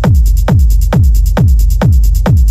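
Techno track: a heavy four-on-the-floor kick drum, each hit dropping in pitch, at a bit over two beats a second, with fast, even hi-hats ticking above it.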